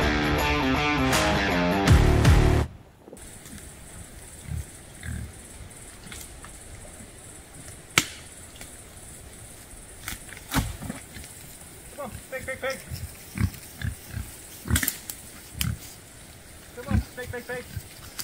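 Background rock-guitar music stops abruptly about two and a half seconds in. After it, pigs grunt now and then as they root through mulched brush, with scattered sharp clicks and cracks from the debris underfoot.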